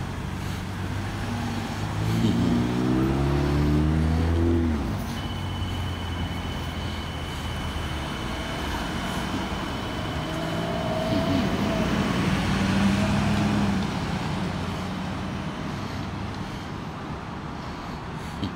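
Street traffic: a vehicle engine accelerating past with its pitch rising, loudest about two to four seconds in, then a second vehicle passing around eleven to fourteen seconds in. A steady high whine sounds from about five to twelve seconds in.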